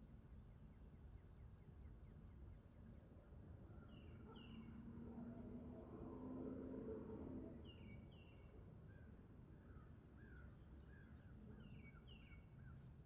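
Near silence: faint outdoor ambience with distant small birds chirping, short paired downward chirps repeated every few seconds and a quicker run of lower chirps near the end. A faint low hum swells and fades about midway.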